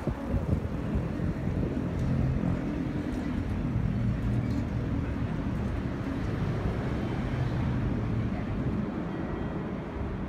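Low rumble of road traffic, with a vehicle engine humming steadily through the middle few seconds.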